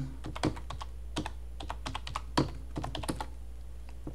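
Computer keyboard typing: about a dozen quick keystrokes over three seconds as a password is entered, then the typing stops.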